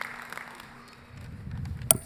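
Thin, scattered applause fading out, then a low rumble and a single sharp pop near the end as the podium microphone is handled.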